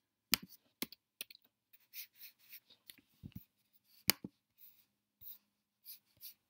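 Sparse, quiet computer keyboard and mouse clicks: a few sharp clicks just after the start, just before one second and about four seconds in, with fainter taps and rustles between.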